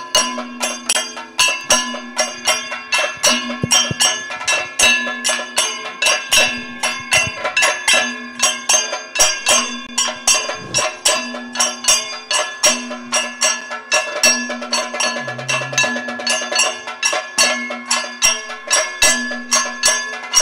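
Kathakali percussion accompaniment: chenda and maddalam drums beat a fast, even rhythm of about three strokes a second, with the ringing of cymbals and gong over a steady low tone.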